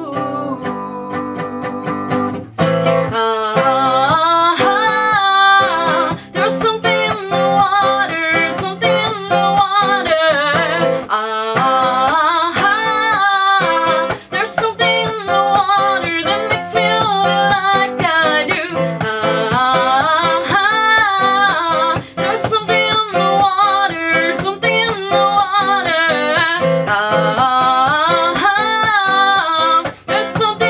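A woman singing while playing a nylon-string classical guitar. The guitar plays alone for the first couple of seconds, then the voice comes in and carries on over it.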